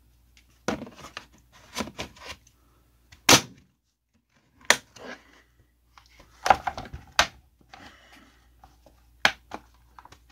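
Plastic front cover of a small electric fan being worked back onto the fan: a series of separate plastic knocks and clicks, the loudest about a third of the way in, as the cover is pushed and snapped into place.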